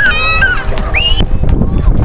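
Wind buffeting the microphone, with high-pitched, wavering voices squealing and calling over it. The sound changes abruptly about a second in.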